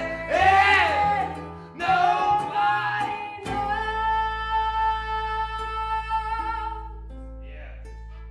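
Live acoustic band: vocals over strummed ukulele and acoustic guitar with fiddle. About three and a half seconds in, the lead singer holds one long note, which ends near seven seconds; the music then drops quieter.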